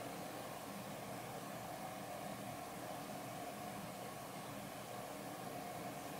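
Steady background hum and hiss with a faint steady whine in it, unchanging throughout, with no distinct knocks or handling sounds.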